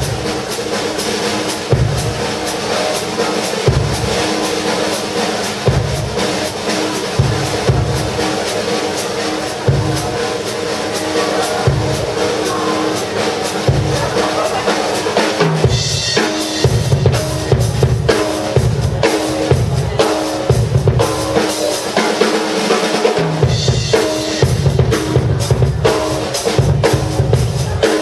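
Drum kit played solo in a busy rhythm of kick drum, snare and cymbals. The low end becomes fuller and denser a little past halfway through.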